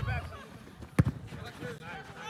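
A football struck once, a single sharp thud about a second in, among faint voices from the pitch.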